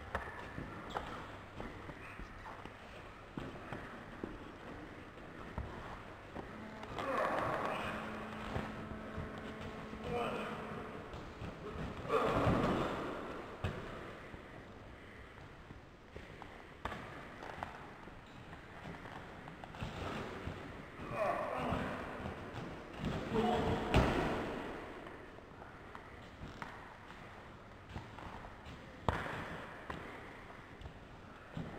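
Indistinct voices with a few thuds of bodies and feet on gym mats during an amateur wrestling bout.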